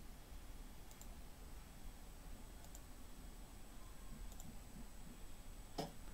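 A few faint computer mouse clicks over low room noise, with a sharper click near the end.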